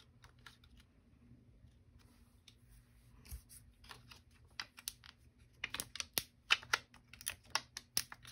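Light, irregular clicks and taps of small objects handled on a tabletop, sparse at first and growing quicker and louder in the second half.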